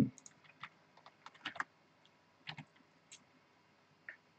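Faint, irregular typing on a computer keyboard: short key clicks in small clusters with pauses between them.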